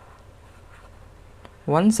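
Felt-tip marker scribbling faintly on paper as a circle is coloured in. A voice says "one" near the end.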